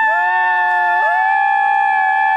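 Several nearby people hold a loud, long, high-pitched 'woo' cheer together. About a second in, another voice slides up in pitch and joins them.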